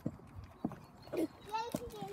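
A few light knocks and rattles as a bag of chocolate mini eggs is handled and put into a plastic bucket. A child's voice starts to laugh near the end.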